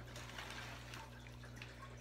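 Quiet room with a faint steady low hum and a few faint light ticks.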